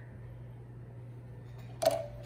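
Steady low hum, broken just before the end by one sharp knock as a hand comes down onto the drawing surface.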